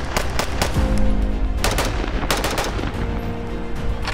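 Pistol shots fired in quick strings, several strings across the few seconds, over background music.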